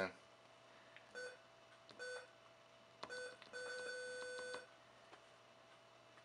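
Electronic beeps from a Soundstream VR-931NB car stereo as its controls are pressed: three short beeps about a second apart, then one longer beep lasting about a second, with a few faint clicks in between.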